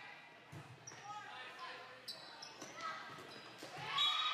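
Indoor volleyball rally: a volleyball being struck, with a few short high squeaks around two seconds in, over players' and spectators' voices echoing in a large gym.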